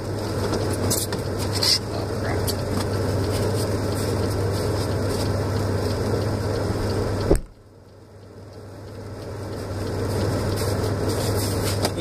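Steady low hum and hiss of a car idling, heard from inside the cabin, with a few light clicks. About seven seconds in comes a single sharp thump, after which the sound drops away and slowly swells back.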